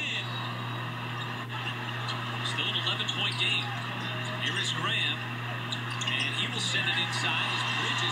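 Basketball game broadcast playing faintly in the background: a commentator talking over arena sound, with a steady low hum underneath.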